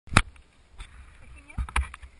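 A few sharp knocks and clicks of a hand handling the camera, the loudest right at the start and two more close together near the end, with a brief faint vocal sound in between.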